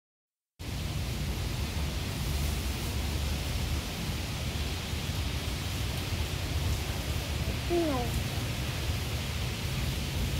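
Steady background hiss with a low rumble underneath. About eight seconds in, one short voice-like call glides down in pitch.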